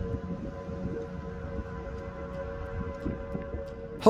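Outdoor tornado warning siren sounding a steady held tone, over a low rumble of wind on the microphone as a tornado passes near the neighbourhood.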